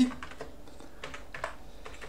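A few separate keystrokes on a computer keyboard, single clicks spaced irregularly through the two seconds.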